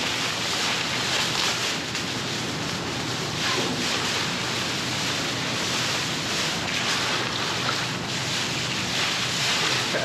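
Wind buffeting the microphone as a steady rushing noise, with the crinkle and rustle of a thin plastic trash bag being handled.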